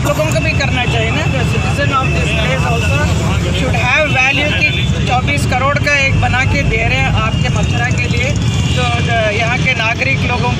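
People talking, several voices, over a steady low rumble of road traffic.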